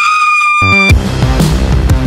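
A woman's long, high-pitched scream held on one note, cut off abruptly about a second in. Loud electronic music with a heavy beat comes in just before the scream stops and carries on.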